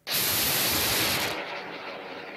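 Arguna 2 amateur rocket's aluminised sugar-propellant ('candy') solid motor firing at lift-off: a sudden loud rush of noise at ignition. After about a second it drops to a quieter, steady rush as the rocket climbs away.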